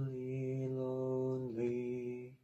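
A man's singing voice holds one long steady note, then moves to a second sung syllable about one and a half seconds in.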